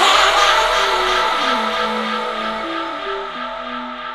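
Electronic dance track in its outro. The drums drop out, leaving sustained synth chords, a few low notes and a hissing noise wash that fade slowly.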